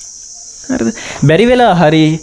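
A man speaking briefly after a short pause, over a steady high-pitched hiss.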